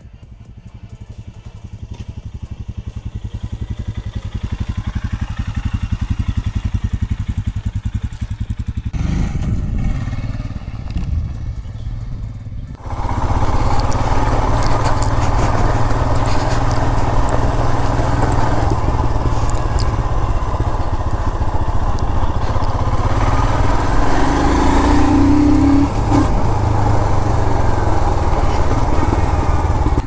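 Royal Enfield Scram 411's single-cylinder engine as the motorcycle rides toward the microphone, growing steadily louder over the first several seconds. From about 13 s in, the same engine is heard from on board at a steady riding pace, under a constant rush of wind and road noise.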